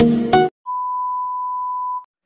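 Background music with plucked notes stops about half a second in; after a short gap, a steady electronic beep at one high pitch is held for about a second and a half, then stops.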